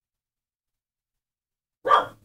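A single short dog bark near the end, sudden and loud against otherwise silent audio.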